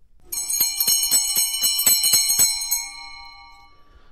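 Short musical transition sting of bright bell-like chimes, struck rapidly for about two and a half seconds, then left ringing and fading out.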